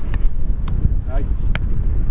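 A football struck with a boot: one sharp thud about one and a half seconds in, with a fainter touch earlier, over a low wind rumble on the microphone.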